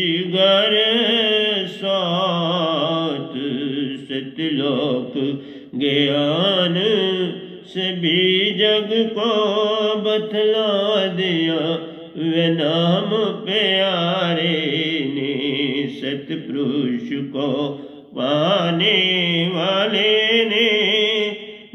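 A man singing a Hindi devotional bhajan in long, wavering held notes, phrase after phrase, with short breaks between phrases.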